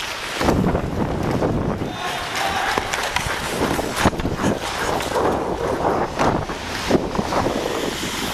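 Ice hockey skate blades carving and scraping across the rink, with wind rushing over a helmet-mounted camera's microphone as the player skates, and scattered sharp clacks of sticks and puck on the ice.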